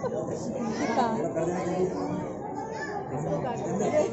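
Crowd chatter: many people talking at once, several voices overlapping.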